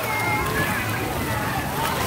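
Splash-pad water jets spraying steadily, with many children's voices and shouts around them.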